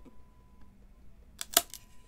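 Cardboard trading-card hobby box being handled as its lid comes off. It is mostly quiet, with a couple of sharp taps about one and a half seconds in.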